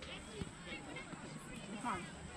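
Faint, distant voices of players and spectators calling across an outdoor soccer field, over a steady background hiss; a nearer voice begins near the end.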